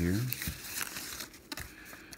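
A wrapping bag crinkling in uneven crackles as an underwater fishing camera is slid out of it by hand.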